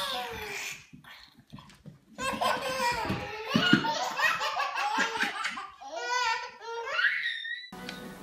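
Hearty laughter, a baby's among it, going on for about five seconds from two seconds in and cut off abruptly near the end. A short falling vocal sound and a few soft knocks come before it.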